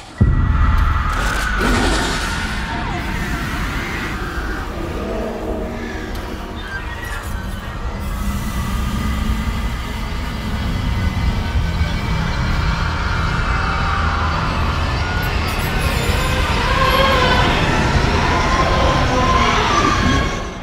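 Tense horror-film score and sound design: a sustained low rumble under wavering, gliding high tones, slowly growing louder toward the end.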